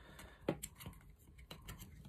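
Faint, scattered plastic clicks and taps as hands handle a Clipsal quick-connect surface socket base and the TPS cable being seated in it, the sharpest click about half a second in.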